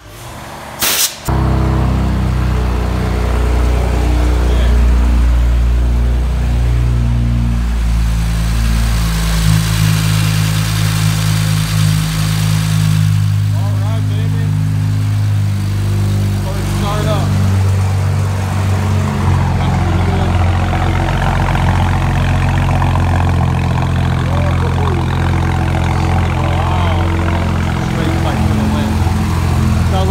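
BMW N54 twin-turbo inline-six with upgraded 19T turbos starting about a second in, then idling steadily on a cold start. The idle note steps to a different pitch a few times as it settles.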